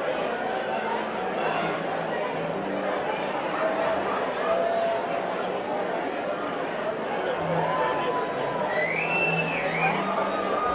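Crowd chatter in a concert hall between songs: many voices talking at once. Near the end a high whistle rises and holds for about a second.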